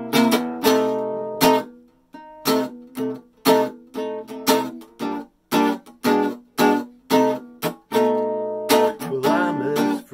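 Archtop acoustic guitar strummed in chords, about two strokes a second, each chord ringing briefly before the next.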